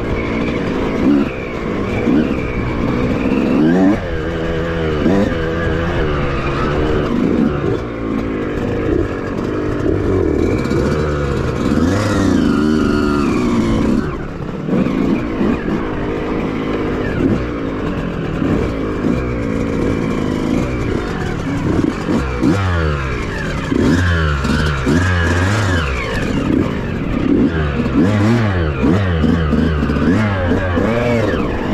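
Two-stroke dirt bike engine revving up and down continually as the bike is ridden along a muddy, rutted trail, its pitch rising and falling with each blip of the throttle.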